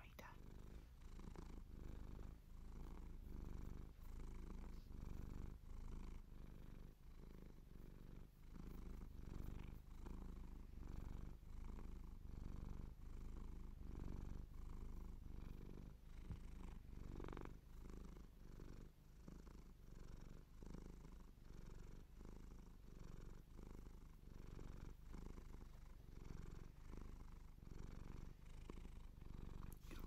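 A domestic cat purring close to the microphone, a low rumble that swells and fades in an even rhythm with each breath in and out.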